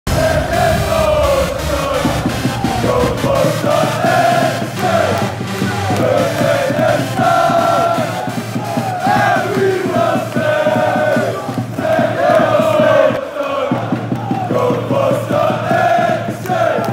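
Football supporters chanting in unison, a crowd singing a repeated terrace song, with a low rumble under the first few seconds.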